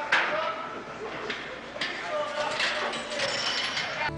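Indistinct voices murmuring in a room, with a sharp knock or clank just after the start and a couple of lighter knocks later on.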